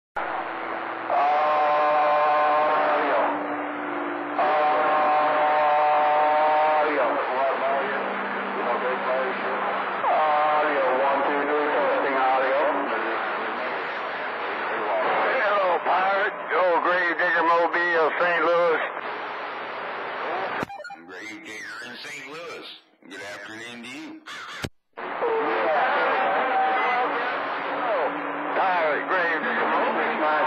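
CB radio receiver on channel 28 picking up distant skip transmissions: thin, garbled voices through the radio's speaker. Two held steady tones of about two seconds each come near the start, and a stretch of fuller-range sound with brief dropouts comes about two-thirds through.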